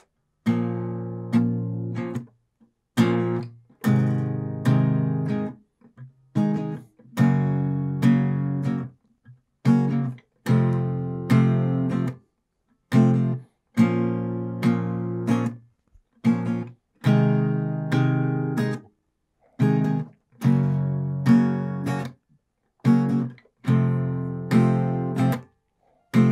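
Acoustic guitar with a capo on the first fret, strummed through a repeating four-chord progression of A minor, G, F and E shapes. The strums come in rhythmic groups, each broken off by a short silent gap where the strings are stopped.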